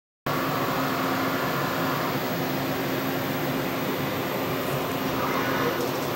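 Steady machine hum with a low drone, like equipment fans or ventilation running.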